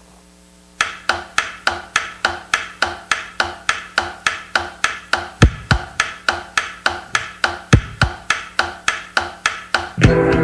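Drum intro of a rock recording: sharp, click-like percussion strikes at an even pace of about three a second, starting just under a second in, with two pairs of deep bass-drum thumps around the middle.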